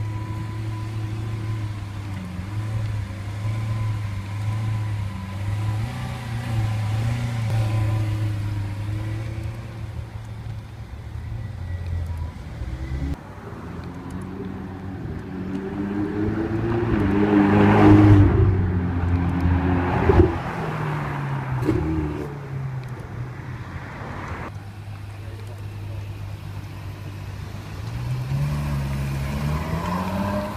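High-performance car engines on a street in several cuts: a Lamborghini Aventador's V12 running steadily at low speed for the first dozen seconds. Then a Ferrari comes past with its engine note rising to the loudest point about 18 seconds in, followed by a sharp crack. Near the end another engine revs up as a car pulls away.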